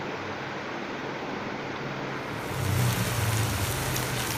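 Minced chicken sizzling steadily as it dry-fries in a nonstick pan without oil, the water it released cooking off while it is stirred with a wooden spatula. A low hum joins in about two and a half seconds in.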